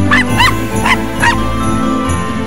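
A small dog giving about five quick, high-pitched yaps in the first second and a half, over Christmas music with jingle bells.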